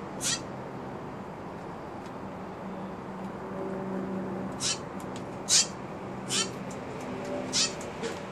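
Steller's jay giving short, scratchy calls, five in all, most of them in the second half, over a low steady hum.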